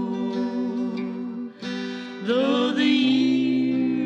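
Two women singing a country song in duet harmony, holding long notes over acoustic guitar accompaniment.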